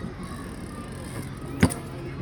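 A steady low background rumble with a single sharp knock, an impact of something hard, about one and a half seconds in.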